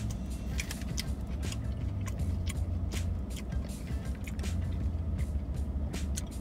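Close-up chewing of a crispy fried chicken nugget: a run of irregular, crisp crunches from the breaded coating, over a steady low hum.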